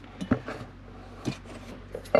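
Light handling noise: a couple of soft clicks about a third of a second in and another about a second later, with faint rubbing over a steady low hum.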